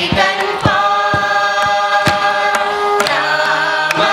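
A group of voices sings a Carnatic song together, holding long notes that glide between pitches. Mridangam strokes keep time about twice a second.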